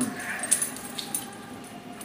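Mouth sounds of a person chewing live Dubia roaches with the mouth closed: wet clicks and small crunches, the sharpest about half a second and about a second in.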